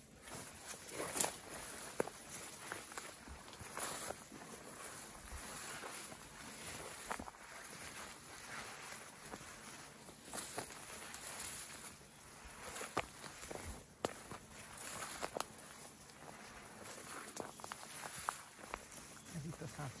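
Footsteps and rustling through dry grass and undergrowth, irregular steps every second or two over a steady outdoor hiss. A voice begins right at the end.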